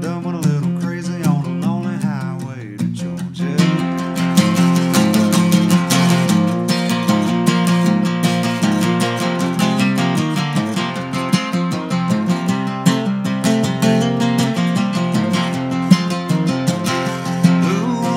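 Steel-string acoustic guitar strummed in an instrumental break. A sung line trails off over the first three seconds, and the strumming grows fuller and steadier from about three seconds in.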